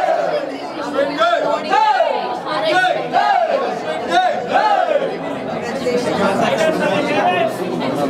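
Crowd chatter: many people talking and calling out over one another at once in a packed hall.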